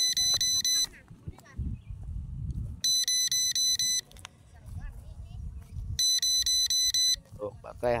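Low-battery warning alarm of a KF101 Pro drone's control system: three bursts of rapid high-pitched beeps, each about a second long and about three seconds apart, signalling that the aircraft's battery is low. A faint low rumble sounds between the bursts.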